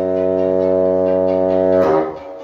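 Bassoon and violin holding one long, steady low note together in free improvisation, breaking off just before the end.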